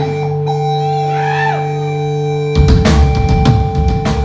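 Live punk rock band: held guitar and bass notes ring steadily, then about two and a half seconds in the full band comes in loud with drum kit and distorted electric guitars.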